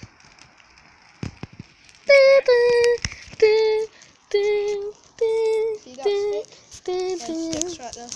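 A child sings a short tune of about ten held notes, starting about two seconds in. Before it there is a quiet pause with a few faint crackles from a small fire.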